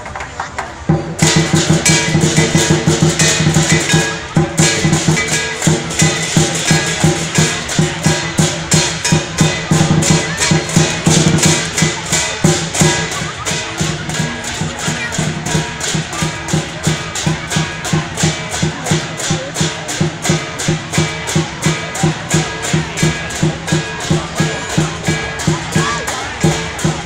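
Lion dance percussion: a drum with crashing cymbals and gong, striking in a fast, steady rhythm with regular accents. It comes in about a second in and drops briefly around four seconds in.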